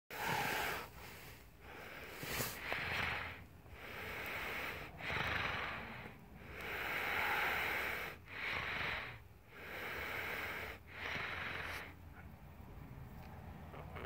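A person breathing audibly close to the microphone, in and out in an even rhythm of about one breath sound every second or so, each one a soft rushing hiss. The breathing fades out about twelve seconds in.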